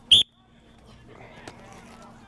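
A coach's whistle blown once in a short, sharp, high blast just after the start; faint voices carry on in the background.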